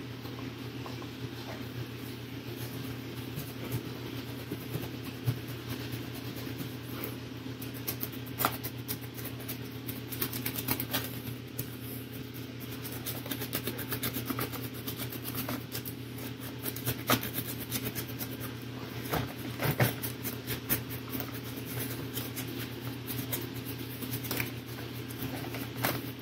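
A steady low electrical hum in the room, with intermittent soft scratchy strokes and light knocks of a stiff flat brush being scrubbed dry over a sculpted rock base.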